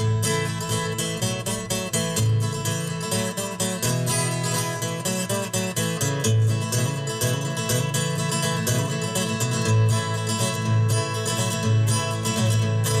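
Solo acoustic guitar strummed in a steady rhythm, an instrumental break between sung verses of a folk ballad.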